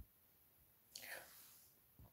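Near silence, with a faint whisper from a person about a second in, lasting about half a second.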